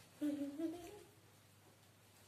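A child humming a few notes that step upward in pitch, lasting about a second.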